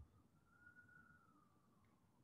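Near silence: room tone, with a very faint thin tone that rises slightly and then slowly falls.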